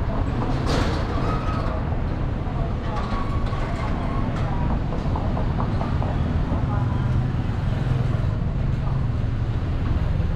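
Street traffic, with a motor vehicle's engine running close by as a steady low hum that is strongest about seven to eight seconds in. People are talking in the background.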